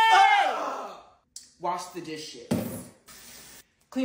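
A drawn-out, whining groan from a woman's voice as she flops back onto a bed, its pitch rising and then falling. It is followed by a short vocal sound, a brief noisy burst, and about half a second of steady hiss.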